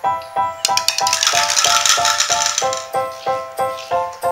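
Plastic toy bowling pins knocked down, clattering and rattling against each other and the tiled floor for about two seconds, starting about half a second in. Background music with a steady repeated keyboard note, about three notes a second, plays throughout.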